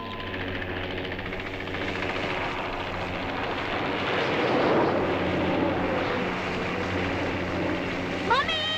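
Helicopter engine and rotor running: a steady low hum under a broad rush that grows louder toward the middle and then levels off.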